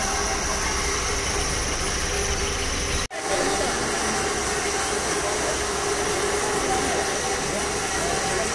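Steady rushing background noise with a low rumble and faint voices in it, cut off for an instant about three seconds in.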